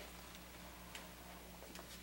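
Quiet room tone: a steady low hum with a few faint clicks roughly a second apart.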